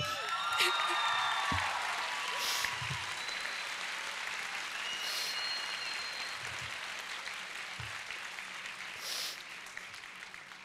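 Audience applauding, loudest about a second in and slowly fading away.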